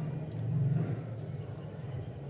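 A steady low rumble that swells about half a second in and eases off after about a second.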